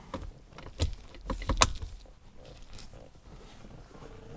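Three light clicks and knocks of hands working a car's center console trim, the third the loudest, followed by faint handling noise.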